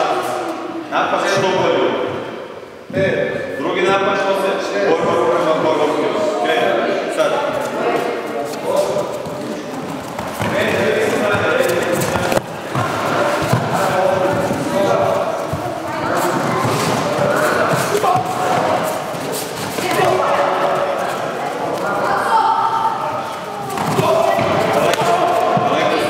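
Boxing training in a large hall: repeated sharp slaps and thuds of punches landing, coming thicker after about ten seconds, under continuous talking and calling.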